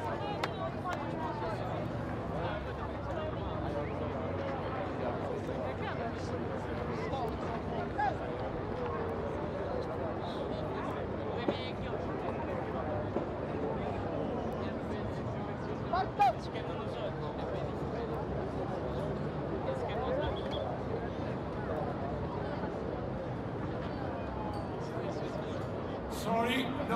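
Indistinct chatter of many voices mixed together, with a few short clicks, the loudest about two-thirds of the way through.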